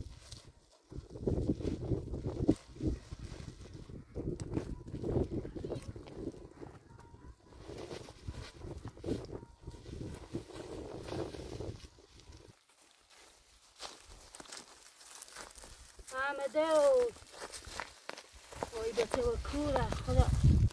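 Footsteps on dry, stony ground and leaves in an irregular shuffle, then a loud call from a person's voice about sixteen seconds in.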